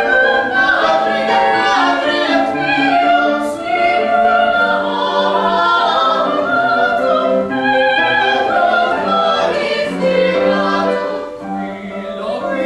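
A large mixed choir of male and female voices singing long held notes.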